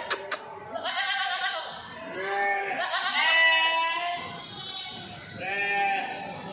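Goats bleating: about four separate calls, the longest and loudest near the middle. There are a couple of sharp clicks at the very start.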